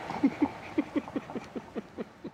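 A man laughing heartily: a run of about nine short "ha" pulses, each a little quieter than the last.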